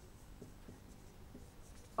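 Faint scratching of a marker pen writing on a whiteboard, in a few short strokes.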